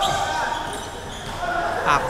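Game sounds of indoor futsal in a reverberant gymnasium: the ball and the players' footwork on the court floor.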